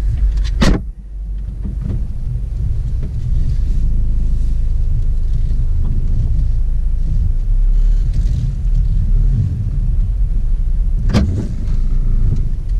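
Inside a car: a door shuts with a sharp thud just under a second in, then a steady low rumble of the car's engine and tyres as it drives, with one more short knock near the end.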